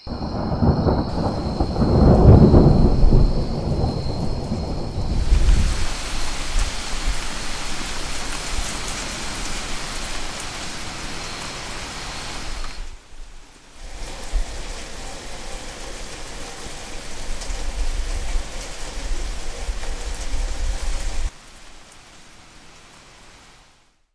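Thunder rumbling loudly over the first few seconds, then steady rain with more rumbling underneath. The sound breaks off briefly just after the middle, resumes, and cuts off suddenly a few seconds before the end.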